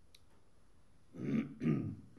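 A man clearing his throat in two short, rough coughs starting about a second in.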